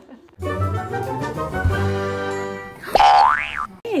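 Comedy sound effects laid over the clip: a held musical chord for about two seconds, then a quick whistle-like glide up in pitch and back down.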